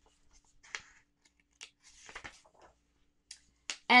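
Faint, soft rustles and crackles of paper as the pages of a large picture book are handled and turned, a few short scrapes spread over a mostly quiet stretch.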